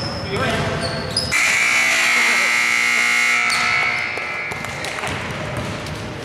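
Gym scoreboard buzzer sounding one steady tone for about two seconds, starting a little over a second in: the horn that ends the game as the clock hits zero. A basketball bounces on the hardwood in a large echoing gym.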